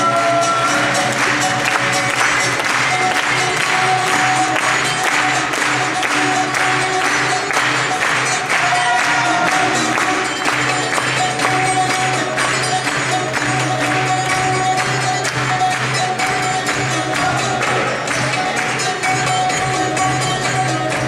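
Greek island folk dance music: a held, wavering melody line over a fast, steady beat that runs without a break.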